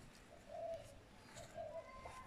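Faint cooing of a pigeon: two short low calls about a second apart, with a thin higher note near the end.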